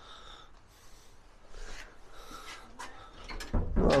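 Faint on-and-off rustling and handling noise around a temporary door hung on a metal frame, then a louder dull knock about three and a half seconds in as the door is pushed shut.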